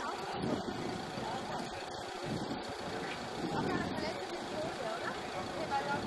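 Open-air city ambience: indistinct voices of people talking, with steady vehicle noise underneath.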